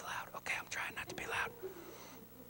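A man whispering a few words in a hushed voice, trailing off about a second and a half in.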